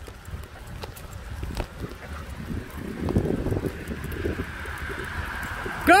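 Kick scooter rolling over brick paving as it is pulled by dogs, a low rumble with irregular light knocks that grows louder about three seconds in, with wind on the microphone.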